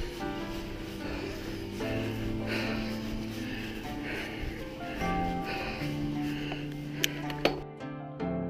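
Background music of held notes that change every second or so, with two sharp clicks about seven seconds in.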